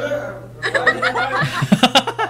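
People laughing: a burst of laughter that starts about half a second in and breaks into quick pulses near the end.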